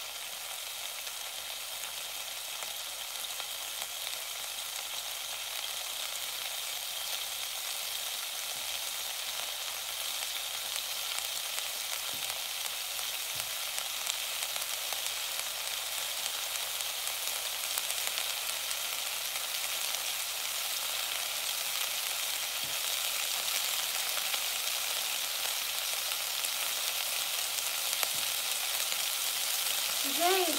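Chopped daikon, carrot and sausage stir-frying in oil in an enameled cast-iron pot: a steady sizzle that slowly grows louder.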